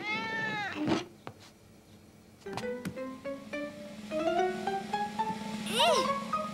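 A cat's meow that rises and falls in pitch, followed after a short lull by light cartoon score of short plucked-string notes climbing in pitch over a low held note, with a swooping rise-and-fall sound near the end.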